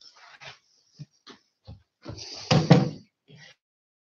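A few scattered knocks and bumps, the loudest about two and a half seconds in.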